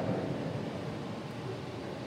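Steady room hiss, with the echo of a man's voice dying away at the start.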